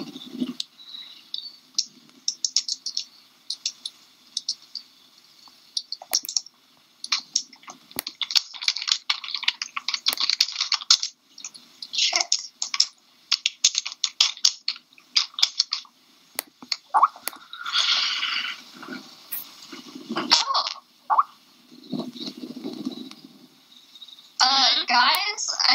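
Bursts of rapid clicks and taps from computer keyboard typing and mouse clicking, heard through a voice call, with a short laugh at the very start.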